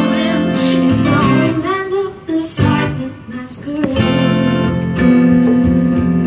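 Live acoustic music: guitar chords with a woman singing in the first couple of seconds. The music thins out briefly about two and three seconds in, then fuller held chords come back from about five seconds.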